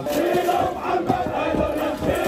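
A crowd of men chanting a hosa together, a tribal lament in mourning, many voices shouting the words in unison.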